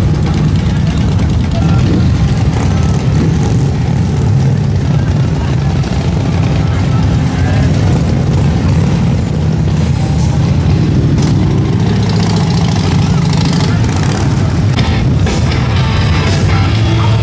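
V-twin cruiser motorcycles rumbling slowly past in a steady low din, mixed with crowd voices and music.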